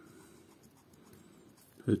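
Edge of a metal coin scraping the latex scratch-off coating of a Cash scratch card, uncovering a number: a faint, dry, continuous scraping. A spoken word starts near the end.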